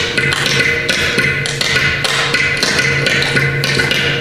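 Mridangam and ghatam playing a fast percussion passage in khanda triputa tala, the tani avartanam of a Carnatic concert: rapid hand strokes over the mridangam's ringing tuned head, with no voice.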